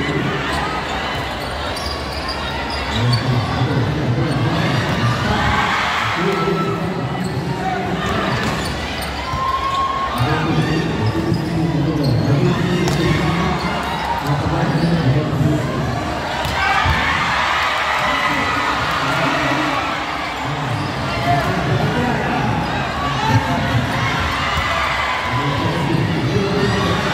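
Volleyball rally in a large indoor hall: the ball is struck by hands and hits the floor now and then, over steady chatter and shouts from players and the crowd in the stands.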